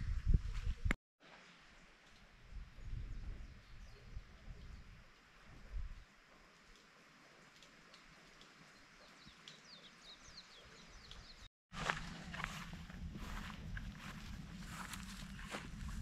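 Faint outdoor farm ambience with a few short, high chirps, then, after a cut, footsteps and rustling through grass over a steady low hum.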